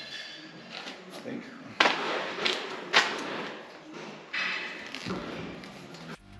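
Handling noise of wiring being fitted to a steel milking-shed frame: cable rustling, with two sharp knocks about a second apart and a scrape near the end.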